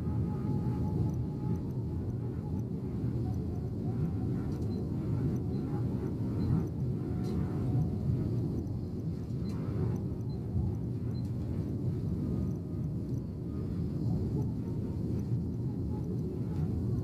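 Steady low rumble of a Yutong Nova coach cruising on the highway, heard from inside the cabin: engine and road noise, even throughout.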